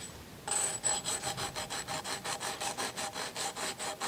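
A hand rubbing briskly back and forth over the sandpaper-like grip tape on a scooter deck. It makes an even train of rasping strokes, about five a second, starting about half a second in.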